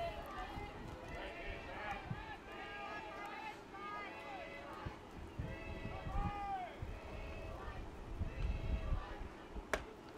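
Faint, distant voices of players and spectators calling out and chattering across the ballfield, with a single sharp snap near the end.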